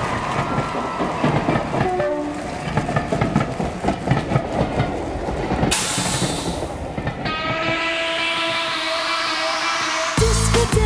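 Underground train sound effect played over the arena speakers: the train rumbles and clatters over the rails, a burst of hiss comes about six seconds in, then a rising whine.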